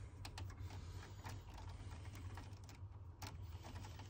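Faint, irregular small clicks and snips of hand pliers working the copper wire cores in a consumer unit, over a steady low hum.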